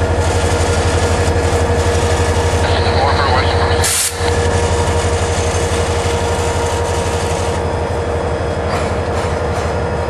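CSX GP40-2 diesel-electric locomotive, with its turbocharged V16 two-stroke EMD engine, running as it rolls slowly past close by. It makes a steady low drone with a constant higher whine, broken by a brief sharp dropout about four seconds in.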